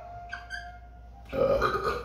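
Dry-erase marker squeaking briefly on a whiteboard as a number is written, followed by a short, low, throaty vocal sound from a man, like a burp.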